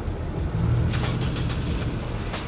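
A car passing on the street, its low engine and road rumble swelling about half a second in and easing off near the end, with background music.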